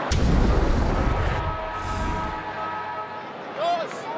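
Edited transition sound effect: a sudden deep boom that rumbles and fades over about two seconds, with a few held synthetic tones lingering after it. It marks a cut between quarters in the highlights package.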